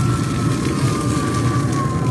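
A steady low rumbling hum, with a thin whistling tone that slowly falls in pitch.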